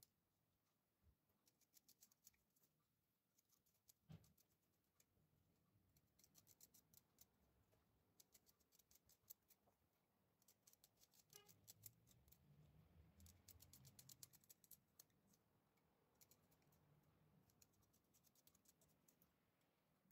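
Near silence, with very faint clicks and scrapes of a knife sliding chopped garlic off its blade into a metal bowl of raw pork ribs and vegetables.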